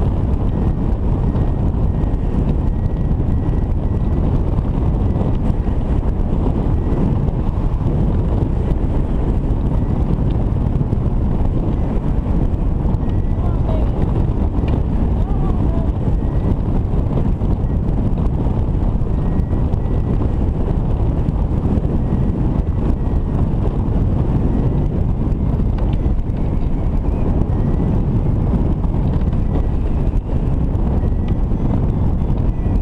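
Steady rush of airflow over the microphone of a camera mounted on a hang glider in flight, a deep, even rumble. A faint, broken high tone comes and goes.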